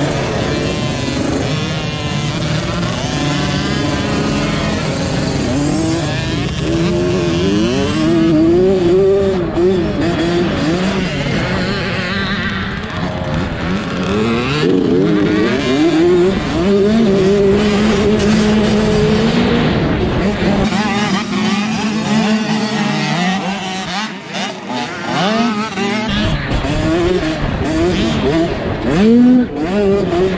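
Small two-stroke minibike engine heard from on board, revving up and backing off again and again as it is ridden round a motocross track, with a sharp rise in revs near the end.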